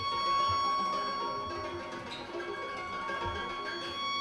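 Violin and pedal harp playing a contemporary chamber piece: a high note held steady throughout over shifting lower notes, with a couple of soft low thumps.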